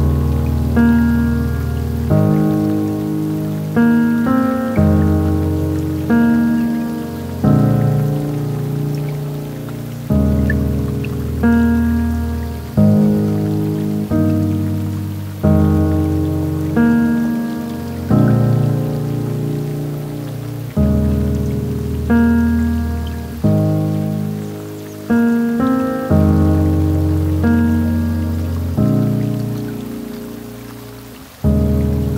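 Slow, gentle solo piano music: soft chords and single notes struck about every one and a half seconds, each ringing out and fading before the next, over a faint steady hiss.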